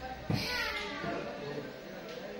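Brief high-pitched voices in the background, like children's, starting about half a second in just after a soft knock, then a low room background.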